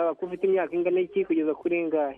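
A caller's voice speaking over a telephone line, thin and narrow-sounding; only speech.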